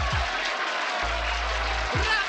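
A large crowd applauding, a dense steady clatter of clapping, over background music whose bass comes in about halfway through.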